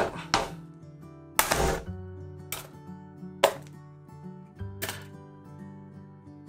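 Background music, over which come several sharp clicks and one louder noise about half a second long, about a second and a half in. They come from the aluminium bottom plate of a 2016–2019 MacBook Pro as its clips are released and the plate comes off.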